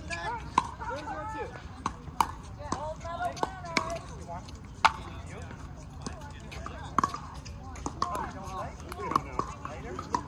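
Pickleball paddles hitting a plastic ball in a doubles rally: irregular sharp pops every second or so, the loudest about five seconds in. Voices talk underneath.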